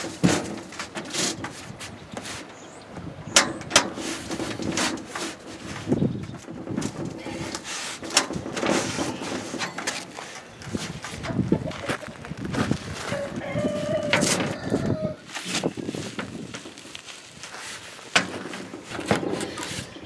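Corrugated tin roofing sheet being shifted and pushed down into place by hand, giving scattered knocks, rattles and scrapes of the thin metal.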